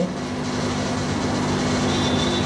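Steady mechanical hum with a low, even drone and rushing noise behind it.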